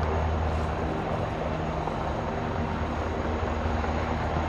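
Eurocopter Tiger attack helicopters hovering: a steady low drone of rotors and turbines with no change in level and no shots.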